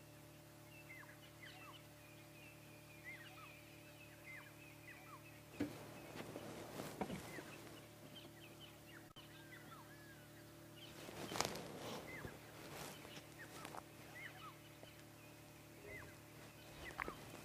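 Faint wild birds calling, with scattered short chirps and whistles, over a low steady hum. A few brief soft knocks or rustles come about six, seven and eleven seconds in.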